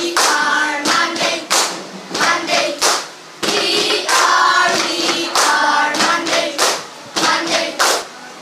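A group of children clapping their hands in a routine while singing together; the sharp claps are the loudest sounds, falling irregularly between the sung phrases.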